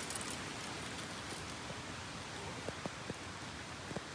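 Steady rushing of water from a nearby waterfall, an even hiss with a few faint clicks a little past the middle.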